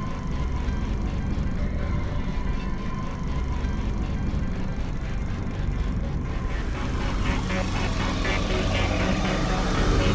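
Dramatic film-score music with a deep, rumbling low drone and a fast, even ticking pulse that grows louder over the last few seconds.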